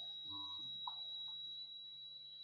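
Faint steady high-pitched whine, with a few soft taps of a stylus writing on a tablet screen, one about a second in.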